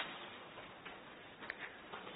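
A quiet pause with low hiss and a few faint, irregular clicks: one at the start, one just before the middle, and a pair about three-quarters of the way through.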